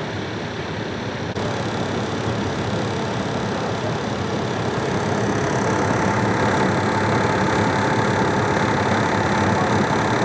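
A fire engine idling steadily, with a faint steady whine coming in about halfway through.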